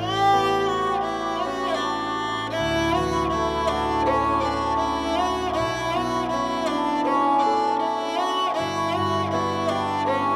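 Instrumental music: a wavering bowed-string melody, violin-like, over sustained low notes that change about every three seconds.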